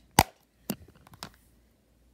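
Plastic Nintendo Switch game case snapping shut with one sharp, loud click, followed about half a second later by a second, fainter click and a couple of light ticks as it is handled.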